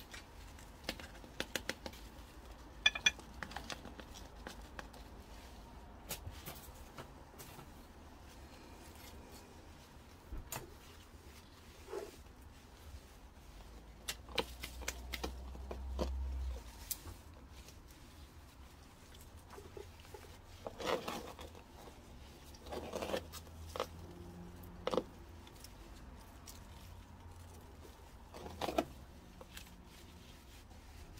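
Gloved hands handling a potted begonia during repotting: scattered rustling of leaves and soil with small clicks and knocks against the pot, including two sharp clicks about three seconds in.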